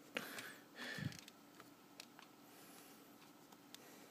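Near silence: quiet room tone with a low steady hum, a short faint noise in the first second, and a few faint isolated clicks.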